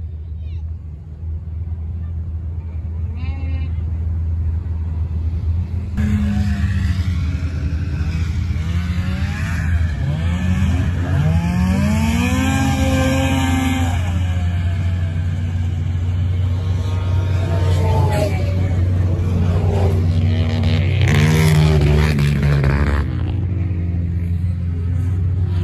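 Engines of snowmobiles and cars racing on the ice. After a cut about six seconds in, an engine revs up and falls back again and again, its pitch climbing and dropping, over a steady low rumble.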